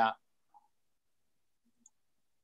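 A man's voice finishing a word, then near silence on the call's line, broken only by a couple of faint tiny blips.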